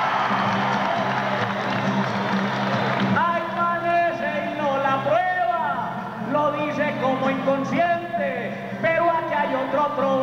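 Acoustic guitar strumming a steady chord vamp. For the first three seconds a crowd cheers and applauds over it, then voices call out in sliding, rising and falling shouts over the guitar.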